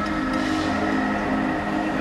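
Downtempo psybient electronic music: sustained synth chords over a steady low drone, evenly loud, with a faint hissing sweep about half a second in.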